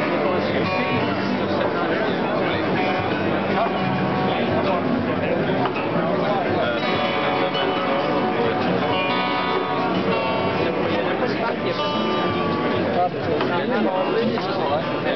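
Acoustic harp-guitar played fingerstyle, with notes ringing and sustaining, over steady crowd chatter.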